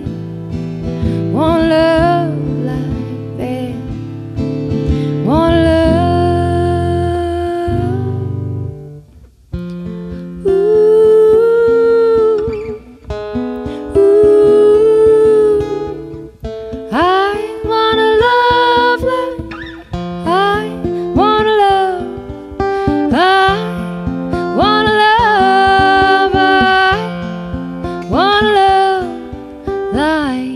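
A woman singing long held notes to her own acoustic guitar accompaniment, in a solo live performance. The music drops almost away for a moment about nine seconds in, then the voice and guitar come back.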